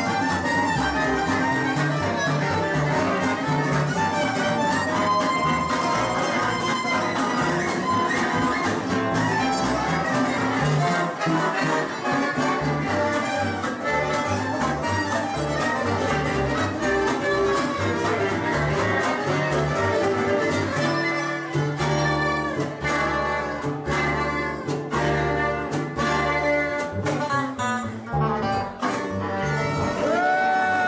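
Live gypsy jazz band: violin playing the lead over acoustic rhythm guitars and a plucked double bass. About two-thirds of the way through, the band switches to short, sharp chord hits over held bass notes.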